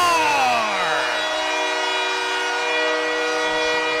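Hockey arena goal horn sounding one long, steady multi-note blast to mark a goal. A falling tone trails away during the first second.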